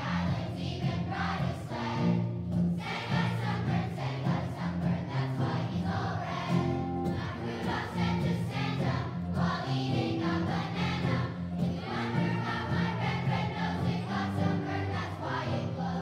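A children's choir singing a song, accompanied by guitars.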